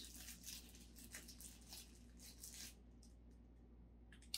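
Faint crinkling and rustling of small clear plastic bags of model-kit parts being handled, dying away about two and a half seconds in, with a low steady room hum underneath.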